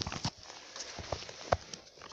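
Footsteps on snow-covered forest ground: a series of short, soft steps, a few each second.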